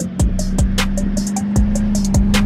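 Background music with a beat: a held low note under deep beats that drop in pitch and sharp high clicks.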